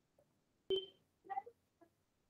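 A short electronic beep a little under a second in, followed about half a second later by a brief second sound, over quiet room tone.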